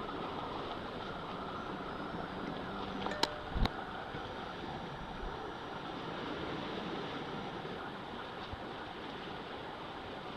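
Steady seaside ambience: wind and the wash of the sea on a rocky shore, with some wind noise on the microphone. Two sharp clicks a little over three seconds in.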